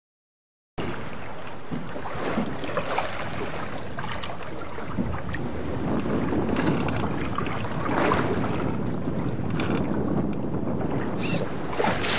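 Wind noise on the microphone over water lapping around a small boat, starting abruptly about a second in and continuing steadily.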